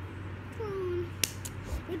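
A girl's brief wordless vocal sound, falling in pitch, followed by a single sharp click, over a steady low hum.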